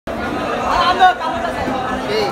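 Background chatter: several voices talking over one another, with a brief louder voice about a second in.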